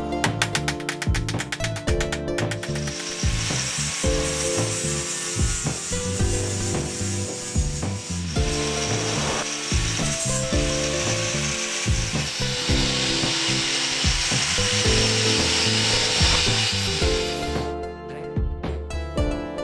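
A grinder's abrasive disc grinding a small steel piece: a steady hissing rasp with a thin high whine that starts about two and a half seconds in and stops suddenly near the end. A rapid run of clicks comes before it.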